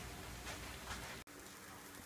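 Faint, even sizzle of vegetables frying in oil. A little past a second in it cuts off abruptly and comes back quieter: shredded butternut squash frying in a cast iron skillet.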